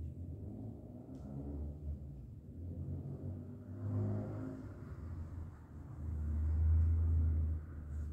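A low rumble that comes and goes, swelling to its loudest about six seconds in and dropping off sharply a second and a half later.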